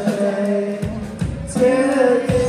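Live rock band playing: a woman sings long held notes over drums, bass and guitar.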